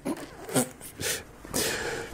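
A few short breathy hisses right at a microphone, the longest in the last half second.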